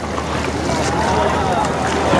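Outdoor ambience in a kayak on open water: steady wind on the microphone with a low rumble, water around the paddled kayak, and faint distant voices about halfway through.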